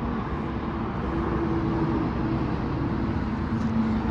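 Steady low rumble of motor vehicle noise, with a faint steady hum that comes and goes.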